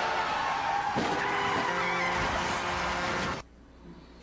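Traffic noise from a commercial's soundtrack: cars speeding past with tyres squealing. It cuts off abruptly about three and a half seconds in.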